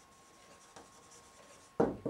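Faint strokes of a marker writing on a whiteboard.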